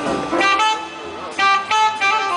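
High school jazz ensemble playing live on an outdoor stage: two short bursts of loud horn-like notes, the first about half a second in and the second about a second and a half in, with a quieter stretch between.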